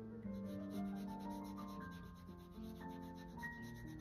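Watercolour brush rubbing and scrubbing on paper in quick, evenly repeated strokes while a swatch is painted, over soft background music of slow held notes.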